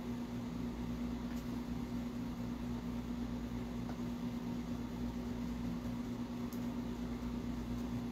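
Steady low background hum with one constant tone, even throughout.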